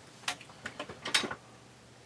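Rummaging in a drawer: a string of light clicks and knocks as items are moved about, the loudest just after a second in.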